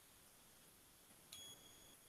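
Near silence, with a faint, brief high-pitched ping that starts with a small click about a second and a third in and holds one steady tone for under a second.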